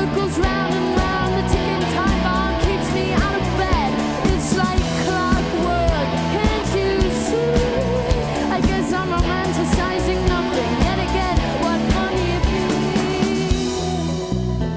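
Indie rock band playing live: a drum kit keeping a steady beat under electric guitar and bass, with a female lead voice singing the melody over them.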